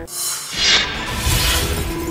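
Broadcast news transition sound effect: a noisy, shattering burst that sweeps down in pitch about half a second in, followed by a second burst of hiss. A background music bed runs underneath.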